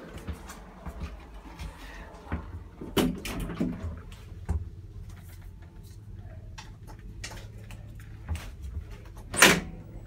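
Clicks and knocks of a small elevator's metal door and fittings being handled, with one loud clunk near the end, over a low steady hum.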